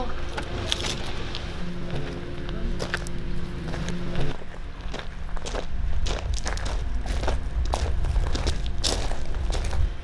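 Footsteps on paving: a run of irregular short clicks and knocks over a steady low rumble, with a faint steady tone in the first few seconds that stops about four seconds in.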